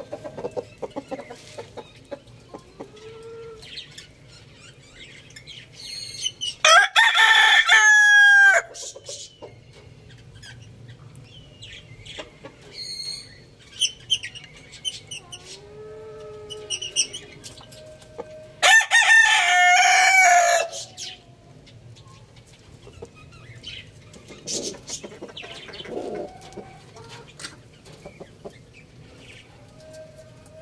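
A rooster crowing twice, about twelve seconds apart, each crow about two seconds long and loud.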